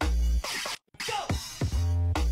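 Grime instrumental from a DJ set, with heavy sub-bass notes in a repeating pattern and record scratches cut in. The sound drops out completely for a moment just under a second in.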